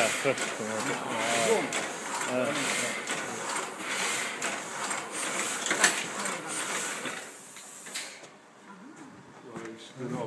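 Old letterpress printing press running: a busy mechanical clatter of quick clicks and knocks with hiss and one sharper clack about six seconds in. The clatter dies down about eight seconds in.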